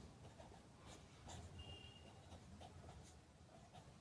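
Very faint strokes of a felt-tip marker pen writing on paper, a few short soft scratches.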